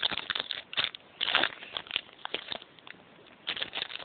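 Foil booster pack wrapper crinkling and trading cards being handled, in short irregular bursts of rustling that ease off in the middle and pick up again near the end.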